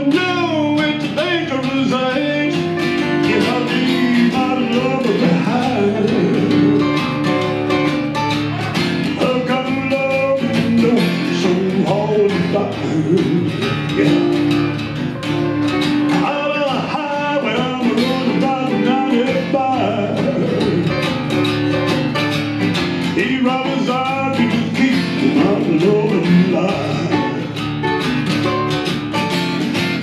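Live acoustic country-style song: two acoustic guitars strumming and picking together, with a man singing over them at times.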